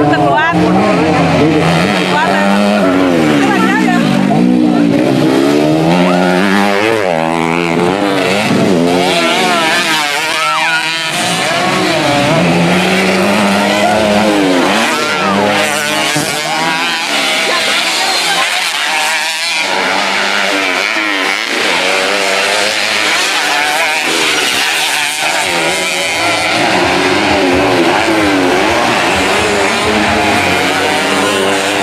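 Racing underbone (bebek) motorcycles on a dirt track, their engines revving hard, the notes rising and falling repeatedly as the riders accelerate and change gear, several bikes overlapping.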